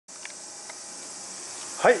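A steady, high-pitched drone of insects, with a man's voice saying "hai" at the very end.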